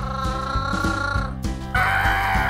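Background music with a steady beat, over which a child's voice makes a held, slightly wavering vocal sound effect for about a second and a half, then a harsher, raspy one near the end.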